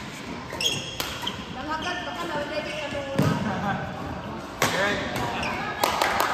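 Badminton rally: racket strings striking the shuttlecock with sharp cracks every one to two seconds, with short high squeaks of shoes on the court floor between hits.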